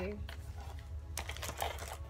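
Clicks and rustles of a cardboard box and the items packed in it being handled as it is opened, with a steady low hum underneath.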